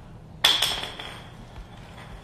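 A single sudden sharp clink about half a second in, with a brief high ringing that dies away, over a steady low room hum.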